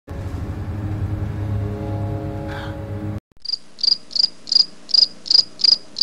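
A steady low drone with several held tones cuts off abruptly about three seconds in. About half a second later a stock cricket-chirp sound effect begins: evenly spaced chirps, nearly three a second.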